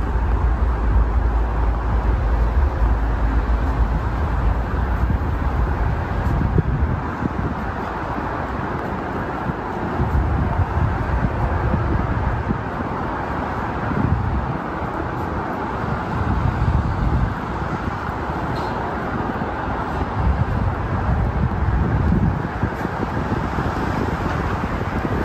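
Steady outdoor road traffic noise from passing cars, with low rumbling swells that come and go several times.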